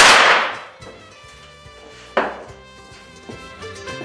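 Two revolver gunshots, staged film sound effects, about two seconds apart, the first much louder and ringing out for about half a second, over background music.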